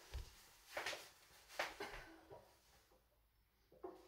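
Quiet handling noises as a player settles onto a stool with a nylon-string classical guitar: a few scattered knocks and rustles, with a string briefly ringing near the end.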